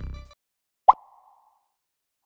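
The tail of the intro music dies away, then about a second in comes a single short pop sound effect with a brief ringing tone that fades within about half a second.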